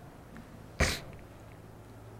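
A person's single short, sharp burst of breath from the mouth or nose about a second in, over quiet room tone.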